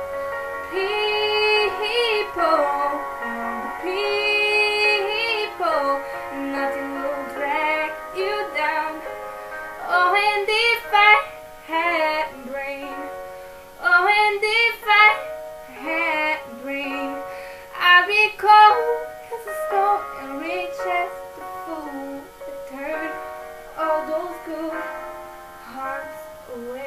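A female singer's voice singing a cover song over an instrumental backing of long held chords. The vocal comes in sliding, bending phrases about every four seconds, with short gaps between them.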